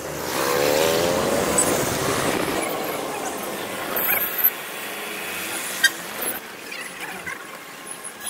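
Road traffic heard from inside a car, with a vehicle engine rising in pitch as it accelerates over the first couple of seconds, then steady traffic noise and a sharp click about six seconds in.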